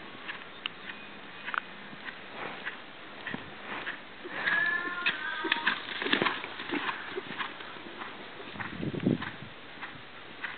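Hoofbeats of an Arabian horse moving under a rider on a sand arena: scattered soft footfalls. A short high-pitched call is heard about halfway through.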